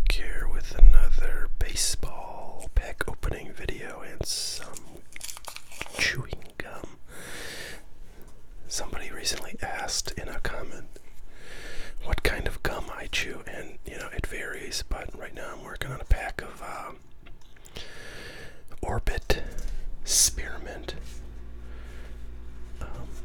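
Soft, close-up whispered speech, the breathy hushed voice of ASMR whispering.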